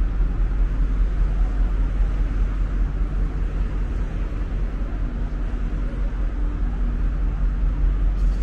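Steady low rumble with a faint hum of machinery, level and unbroken, in the open air beside a docked cruise ship.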